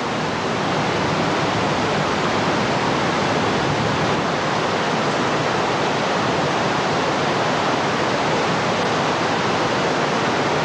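Heavy rushing water from a dam's flood release: a dense, steady rush that swells during the first second and then holds.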